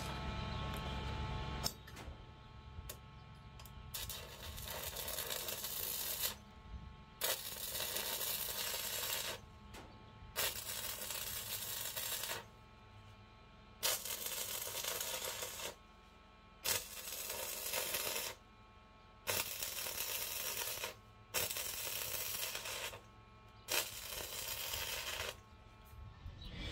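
Stick (MMA) welding arc from a 2.5 mm Chem-Weld 7000 rutile electrode, struck again and again for tack welds: about nine short bursts of hiss, each one to two seconds long, with brief gaps between. An already used electrode restrikes each time.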